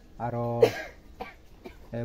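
A man speaks one short word, followed at once by a single short, sharp cough.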